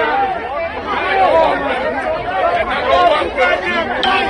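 A crowd of many people talking and calling out over one another, no single voice standing out.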